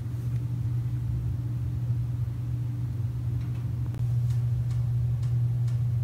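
A steady low hum, getting a little louder about four seconds in.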